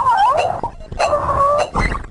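Cartoon character voices crying out: a short wavering yelp, then a held cry starting about a second in.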